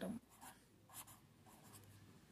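Marker pen writing a word on paper: a few faint, short scratchy strokes.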